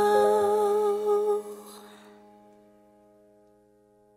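A Tagalog love ballad ending: a singer holds the last note over a sustained chord. The voice stops about a second and a half in, and the chord rings on, fading away.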